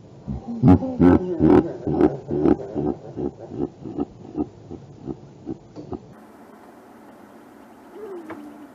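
A woman laughing hard, a long run of loud ha-ha bursts about two or three a second that gradually weaken and die out about six seconds in.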